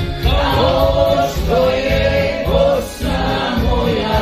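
A group of voices singing a melodic song over accompaniment with a steady low beat, about two beats a second.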